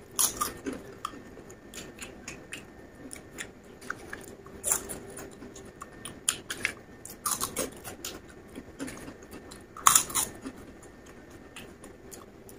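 Close-up crunching and chewing of crispy potato chips and corn snacks: irregular sharp crunches of bites and chews, the loudest a bite about ten seconds in.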